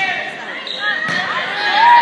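A volleyball being struck during a rally: sharp hits at the start and about a second in, over spectators' and players' voices and shouts.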